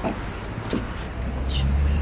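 A motor vehicle's low engine rumble, growing louder over the last second.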